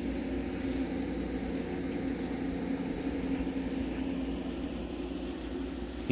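Steady low drone of a vehicle engine, with a thin, steady insect trill from crickets high above it.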